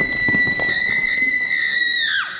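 Post-production sound effect: a loud, steady high-pitched tone with a stack of overtones, held and sinking slightly in pitch, over a faint rough rumble.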